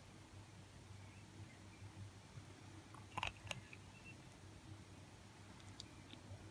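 Near silence: faint room tone with a low steady hum, broken by two brief soft clicks a little past halfway.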